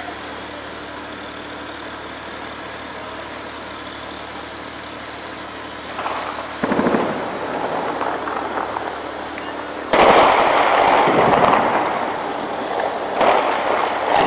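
Heavy weapons fire from shelling by tank cannons and anti-aircraft guns. A steady low background runs for about six seconds, then comes a first boom. About ten seconds in a much louder blast of fire starts suddenly and stays loud for about three seconds, and another burst follows near the end.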